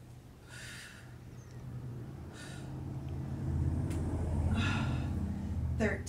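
A woman breathing hard with effort during a core exercise: three short, audible breaths, about a second in, at about two and a half seconds and a longer one near five seconds, over a low rumble that swells in the second half.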